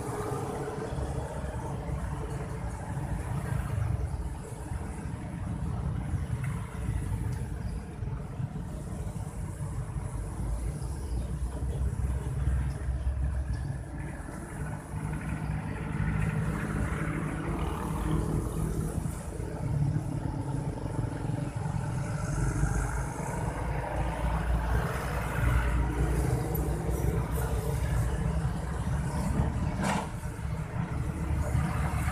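Mixed road traffic passing close by: motorcycles, cars and trucks, with a steady engine and tyre rumble that swells and fades as vehicles go past. It gets louder in the second half as a dense line of motorcycles and a truck passes.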